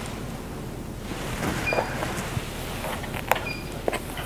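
A tail comb and hands working through damp hair on a mannequin head: soft rustling and handling with a few sharp clicks, the loudest a little past three seconds in.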